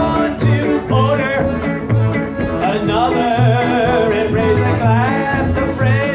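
Live folk-country band playing: a man singing over electric guitar, accordion and cello, with a steady low bass pulse about twice a second.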